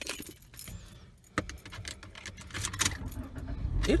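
A string of light clicks and rattles from handling inside a car, with one sharper click about a second and a half in.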